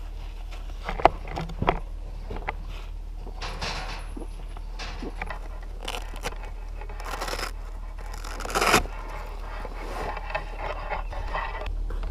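Backpack and gear being handled: nylon fabric rustling and scraping, with a few sharp clicks and knocks in the first two seconds and the loudest rustle near the end.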